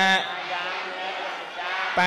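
Buddhist monk chanting on a steady monotone pitch through a microphone and PA. A held syllable ends just after the start, there is a pause of about a second and a half, and the next chanted phrase begins near the end.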